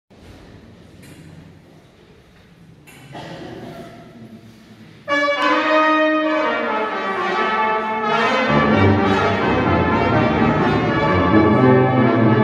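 Brass ensemble of trumpets, trombone and tuba playing in a large church. It is soft at first, then about five seconds in the ensemble comes in loudly with a full sustained chord, and the tuba's low notes join about three seconds later.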